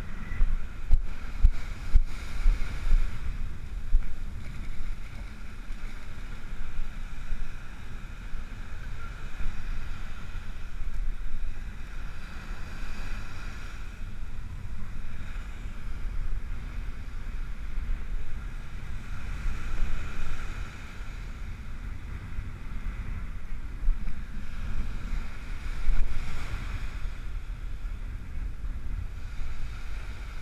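Wind buffeting the microphone in uneven gusts, over the steady wash of surf breaking and running up the beach.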